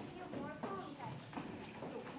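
Faint, indistinct voices in a large hall, with no clear words.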